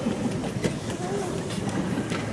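Low murmur of indistinct voices from a seated audience in a large hall, over a low rumble, with scattered small clicks and rustles.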